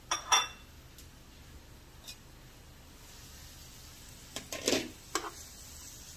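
Metal cookware clinking: two sharp clinks with a brief ring at the start, a couple of light taps, then a short clatter of knocks about four and a half seconds in, over a faint sizzle from the pan.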